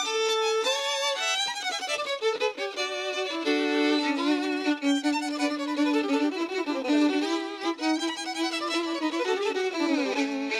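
Background violin music: a violin playing a melody over a held low note, with some sliding notes.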